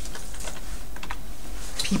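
Typing on a computer keyboard: an uneven run of quick key clicks, over a low steady hum.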